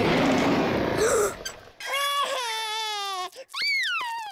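A cartoon robot dinosaur's roar, a loud rough blast lasting about a second and a half. It is followed by a young child wailing and crying in a wavering pitch, rising again near the end.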